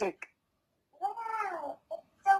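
A toddler's short, high-pitched wordless vocal sound, rising then falling in pitch, about a second in.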